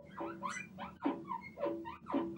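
Chalk squeaking on a blackboard while a word is written: a run of short, faint, gliding squeaks, several a second.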